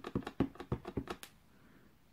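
A clear acrylic stamp block tapped repeatedly onto an ink pad to ink a rubber flower stamp: about ten quick, light taps that stop about a second and a half in.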